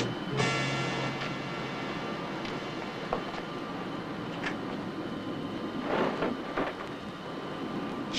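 Film soundtrack: a held music chord dies away in the first second, leaving a steady background rumble like traffic, with two brief sounds a little over halfway through.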